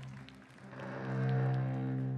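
Slow music on bowed cellos: a held low note that dips briefly, then swells with higher notes joining about a second in, as the duo's piece opens.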